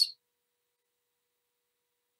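Near silence: a woman's reading voice ends on a hissed 's' at the very start, then the sound drops out completely.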